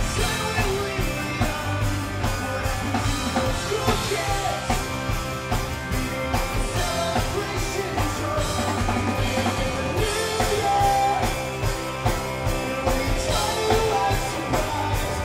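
Rock band playing live: electric guitars, bass and a drum kit keeping a steady beat, with voices singing over them.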